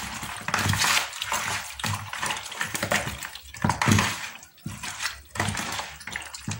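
Hands kneading and squeezing raw, seasoned pork chops in a plastic bowl: wet squelching and slapping in irregular bursts.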